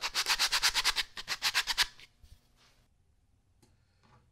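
Folded 120-grit sandpaper rubbed quickly back and forth over the end of a wooden dowel to round its edge, about eight to nine scratchy strokes a second, stopping about two seconds in.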